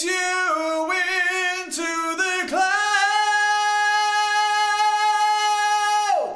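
A man singing unaccompanied, unprocessed, about 18 inches from the microphone in a small tiled bathroom, so the hard room's reverb is part of the sound. A few short sung notes, then about halfway through he holds one long steady high note.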